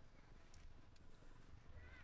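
Near silence: faint outdoor ambience with a few soft clicks and a brief faint chirp near the end.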